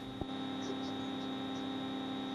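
Steady electrical hum made of several fixed tones, with a faint click shortly after the start.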